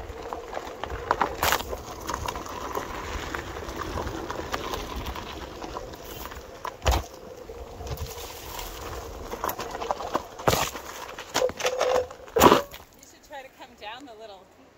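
Onewheel electric board rolling over a dirt trail: a steady rumble of the tyre on gravel with a faint hum, broken by several sharp knocks from bumps, the loudest near the end.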